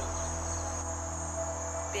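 Steady high-pitched insect trill over a low steady hum.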